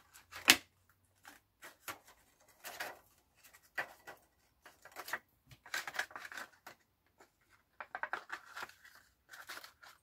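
Clear acetate sheet and thin card being handled and pressed into place inside a small paper box: scattered crackles, rustles and light clicks, with one sharp click about half a second in.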